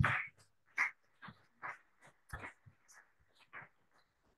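Faint audience applause, heard as short, broken bursts about two a second.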